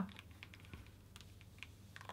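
Faint, scattered light ticks and crackles as a hardened gold hot-glue tree is peeled up off its mat.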